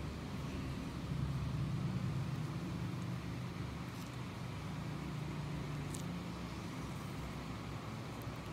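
Steady low rumble of background noise, swelling slightly a second or two in, with a couple of faint clicks.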